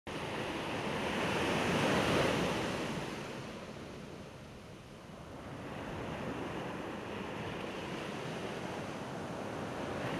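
Ocean surf breaking: a wave swells to a peak about two seconds in and falls away, then the wash builds again from about six seconds.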